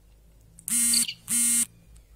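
Two short electronic buzzer beeps, each a low, buzzy tone about a third of a second long, the second following just over half a second after the first.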